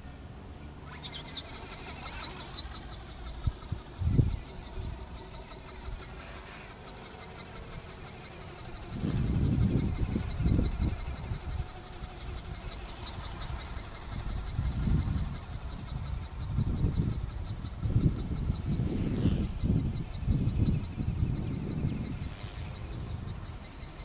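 Wind gusting against the microphone, rumbling in irregular bursts from about nine seconds in. Under it runs a steady high-pitched pulsing buzz, like an insect chorus, with a single bump about four seconds in.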